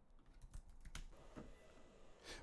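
Faint typing on a computer keyboard: a handful of separate key clicks.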